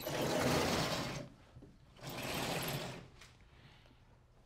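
Chalkboard eraser wiped across a blackboard in two strokes of about a second each, the second starting about two seconds in.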